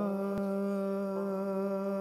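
A male Sikh kirtan singer holding one long, steady note.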